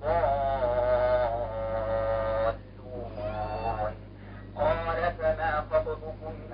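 A man chanting Quran recitation over an online call, the sound thin and cut off in the highs. He holds one long steady vowel for about two and a half seconds, the six-count madd lazim elongation on 'ad-dallun', then goes on with softer chanted phrases from about three seconds in.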